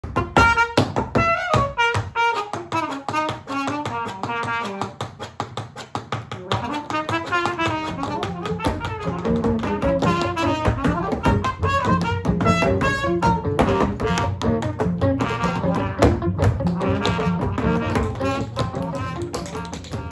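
Live improvised jazz: a trumpet plays melodic lines over double bass and guitar, with the sharp, rapid clicks of tap-dance shoes as percussion.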